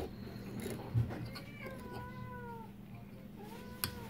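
A cat meowing: one long, drawn-out meow of over a second, then a shorter rising one near the end. A sharp knock about a second in as the 3D-printed plastic tooth box is handled.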